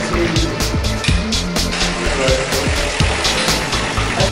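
Linotype line-casting machine running, a mechanical clatter of repeated clicks, with background music over it.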